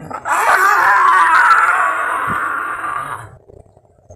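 A loud, drawn-out cry lasting about three seconds, starting a moment in and cutting off a little before the end.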